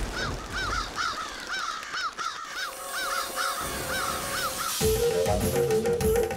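Crows cawing in a rapid string of short harsh calls, over a faint held musical tone. About five seconds in the calls stop and music with a drum beat starts.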